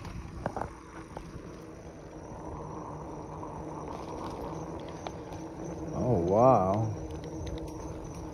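Steady low background noise of an outdoor night scene with a few faint ticks, and a person's wordless voice sound rising then falling in pitch about six seconds in.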